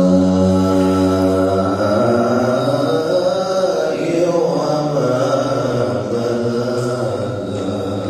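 A man reciting the Quran in the melodic tahbir style, with no accompaniment. He holds one long note steady for about two seconds, then draws the same breath out into ornamented turns of pitch that fade near the end.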